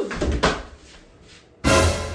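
A ball kicked across a hard floor, with a sharp thud at the start and a lighter knock about half a second later. About one and a half seconds in, a loud musical sound effect cuts in suddenly and fades away.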